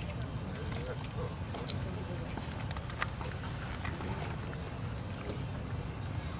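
Outdoor background noise: a steady low rumble with a few faint clicks, the sharpest about three seconds in.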